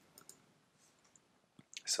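Two faint clicks of a computer mouse button a fraction of a second in, a click on an on-screen button; otherwise quiet room tone until a word begins near the end.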